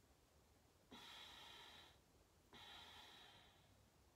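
Two long, faint breaths pushed out through the nose, one after the other, each lasting about a second: a two-stroke exhale in a paced breathing exercise.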